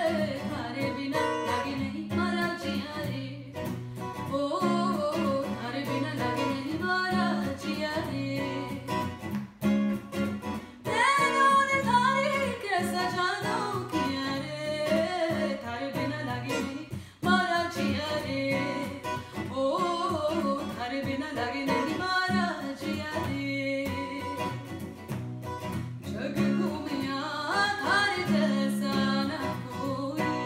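A woman sings a Bollywood song with ornamented, gliding runs, accompanied by a steel-string acoustic guitar. There is a quick run of rising and falling notes about eleven seconds in.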